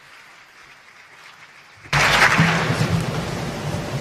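Audience applauding in a large hall, coming in suddenly about two seconds in after a faint hiss, as a speaker is welcomed to the podium.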